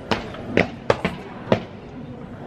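Four dull thumps of a person jumping and landing hard on a floor, spaced about half a second apart.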